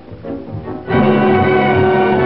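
Orchestral cartoon score. It is subdued for the first second, then the full orchestra comes in loudly about a second in, with held string chords.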